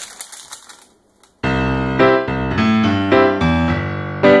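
Faint crinkling of parchment paper for about the first second, a brief gap, then piano music starts about a second and a half in, playing a run of single notes.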